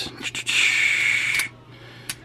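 A person's breath close to the microphone, a hiss about a second long, with a few light clicks of plastic toy parts being handled.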